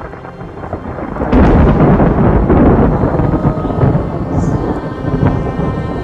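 Thunder sound effect in a staged Passion play, marking the death of Christ on the cross. A heavy rolling rumble swells up and breaks loud a little over a second in, then keeps rolling.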